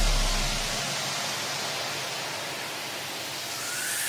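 White-noise sweep in an electronic dance track's breakdown: a steady hiss as the bass fades out in the first second. It dips and then swells again near the end under a faint rising tone, a build-up riser.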